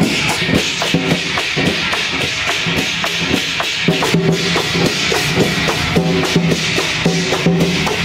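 Temple procession percussion music: drums and wood-block beats struck in a steady rhythm, a couple of hits a second, over a continuous cymbal-like shimmer, with pitched notes sounding over it in the second half.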